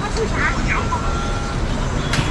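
City street ambience: a steady traffic rumble, with people talking briefly nearby about half a second in.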